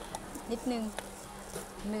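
A steady low buzzing hum under a few soft words from a woman, with a single sharp click about a second in.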